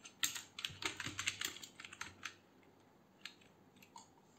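Typing on a computer keyboard: a quick run of keystrokes lasting about two seconds, then two single key clicks near the end.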